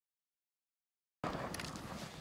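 Dead silence for just over a second, then outdoor microphone noise cuts in abruptly, with a sharp click shortly after.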